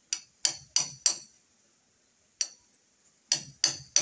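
Hammer nailing into a timber beam overhead: eight sharp, briefly ringing blows. Four come in quick succession, one follows alone after a pause, and three more come close together near the end.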